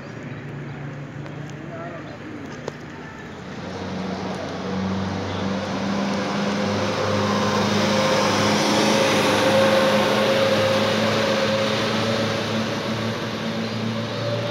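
A motor vehicle engine running close by at a steady pitch. It grows louder from about four seconds in and eases slightly near the end, over the voices of a crowd in the street.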